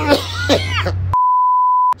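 A steady, high-pitched censor bleep, a single pure tone just under a second long, with all other sound cut out beneath it. It comes about a second in, after brief exclamations.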